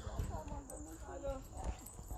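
Faint voices of people talking in the background, with soft knocks and footsteps as a handheld phone is carried about over a hard floor.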